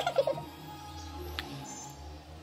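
A baby's short vocal sound with a wavering pitch in the first moment, over steady background music; a single click about halfway through.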